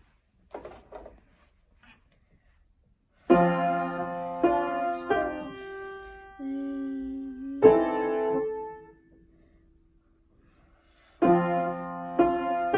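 Weinbach upright piano: a student plays the fourth harmonic progression in F major, a sequence of chords struck from about three seconds in, ending on a held chord that fades out. After a short pause, the chords start again near the end. A few faint knocks come first.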